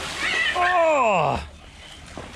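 A splash of someone jumping into a swimming pool, then a long vocal cry that slides steadily down in pitch for about a second, a drawn-out "whoa" that is louder than the splash and fades about a second and a half in.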